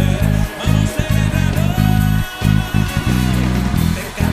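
Electric bass guitar playing a line of short low notes separated by brief gaps, over the recorded band track of the worship song it covers.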